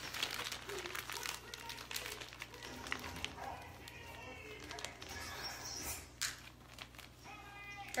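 Plastic zip-top bag crinkling and rustling in quick irregular crackles as it is handled and filled with cannoli filling for piping.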